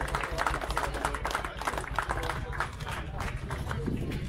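A small crowd clapping: an uneven patter of hand claps that thins out near the end, with voices talking over it.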